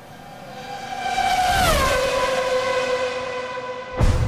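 Outro sound effect: a steady tone that swells with a rushing hiss, drops in pitch a little before the middle and holds at the lower pitch, leading straight into the closing music.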